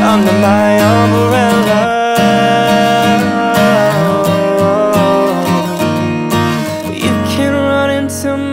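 Acoustic guitar strumming under a man's singing voice, which slides between notes in drawn-out vocal runs.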